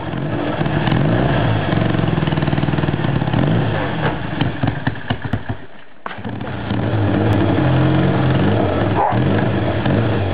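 Triumph 500 Daytona parallel-twin engine running on its first tests after restoration, the revs rising and falling as the throttle is blipped. The sound drops away just before six seconds in, then the engine runs again.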